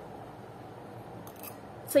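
Quiet steady room noise, with a brief faint clicking or rustle about one and a half seconds in. A woman's voice starts at the very end.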